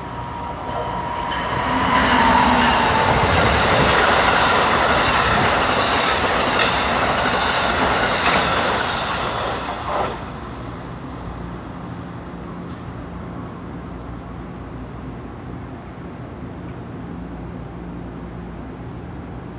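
Amtrak passenger train led by an ACS-64 electric locomotive passing through at speed: a loud rush of wheels on rail with repeated clicks over the rail joints, and a high tone that dips in pitch as the locomotive goes by. The sound drops off suddenly about ten seconds in as the last car passes, leaving a faint low rumble.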